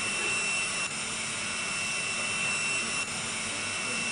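Steady whirring machine noise with a thin high-pitched whine running through it, like a small electric motor or blower, dipping briefly twice.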